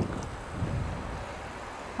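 Steady rush of wind on the microphone and road noise from an electric bike on motorbike tyres riding along tarmac, with no distinct motor whine.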